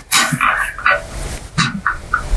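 A black plastic chair part is handled and pushed into place against the seat frame: a rustle at the start, then a series of short, irregular creaks and knocks.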